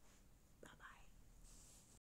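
Near silence, with a single faint whisper from a woman a little over half a second in.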